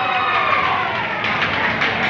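Noise from a large crowd of spectators, many voices shouting and calling at once, with one drawn-out call falling in pitch.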